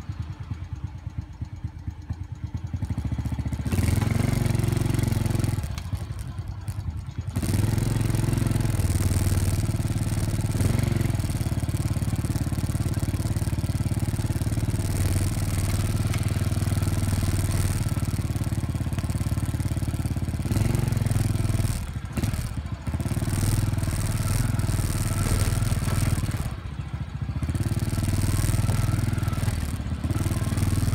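Motorcycle engine running under way, with a hiss of wind noise on top. It is quieter for the first few seconds, gets loud about four seconds in, and dips briefly three times: around six seconds in, a little past twenty seconds, and near the end.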